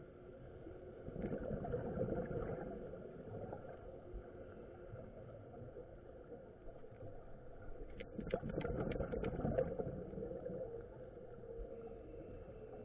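Underwater sound of a scuba diver's exhalation through the regulator: two rushing bursts of bubbles about a second in and about eight seconds in, the second with a quick run of crackling clicks, over a faint steady hum.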